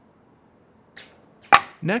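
A single sharp knock about one and a half seconds in, after a brief faint swish; the rest is quiet room tone.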